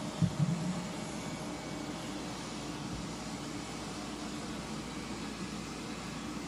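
Steady background noise with a faint hum, and a brief low voice sound about a quarter second in.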